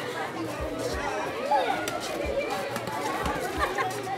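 Several people talking at once, a murmur of overlapping voices with no one voice standing out.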